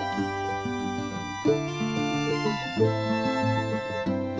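Background music: a melodic instrumental track with sustained, overlapping pitched notes.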